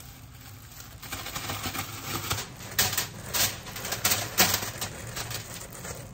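Plastic bag of oiled, seasoned broccoli florets crinkling and rustling as it is shaken and handled. A busy run of crackles starts about a second in and is loudest through the middle.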